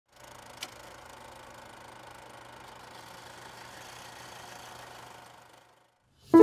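Faint steady low hum under an even hiss, with a single sharp click about half a second in; it fades out just before the end.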